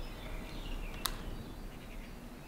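Faint outdoor ambience with distant bird chirps, and a single sharp click about a second in.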